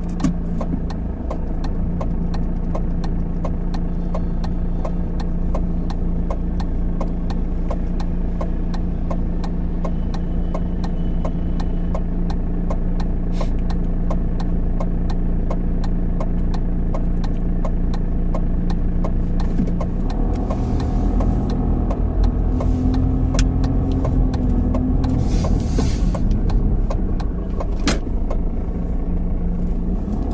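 Car engine idling with a steady hum, heard from inside the car, with a regular light ticking. About twenty seconds in the car pulls away and a heavier low rumble takes over.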